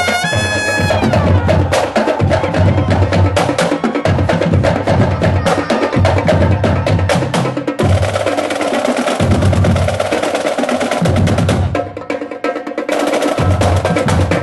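Drum and bugle corps playing: a held brass chord ends about a second in, then the drum line carries the music with fast snare-drum strokes and deep bass-drum hits. The sound drops briefly near the end before the full corps comes back in.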